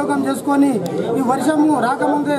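Speech: a man talking steadily to the camera.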